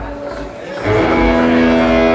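Amplified electric guitar chord struck about a second in and held ringing steadily, several notes sounding together.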